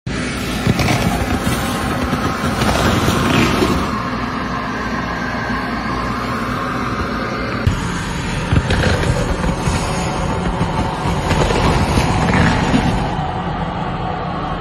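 Anhydrous ammonia escaping under pressure from a leaking tanker truck: a loud, steady rushing hiss that holds throughout, with a couple of brief clicks.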